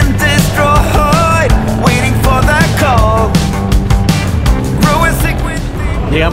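Loud background rock music with a beat and a melodic lead line.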